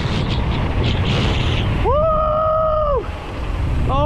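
Mountain bike rolling fast down steep rough concrete, with loud rumble from the tyres and wind buffeting the camera microphone. About two seconds in, a single long held whoop rises, holds for about a second, then falls away.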